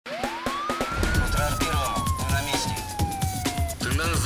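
A single siren wail, rising quickly and then falling slowly, over a run of sharp percussive hits and a low rumble: the siren effect of a crime-news title sequence. The wail stops shortly before the end.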